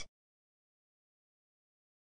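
Silence: the soundtrack is blank, with only the last trace of a synthesized voice cut off at the very start.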